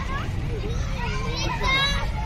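Children's voices on a playground: high-pitched calls and chatter, with a louder call near the end, over a steady low rumble.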